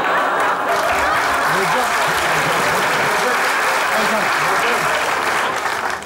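Live studio audience applauding steadily, with laughter mixed in.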